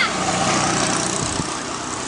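Street noise with a motor vehicle's engine running steadily nearby, over a constant background hiss.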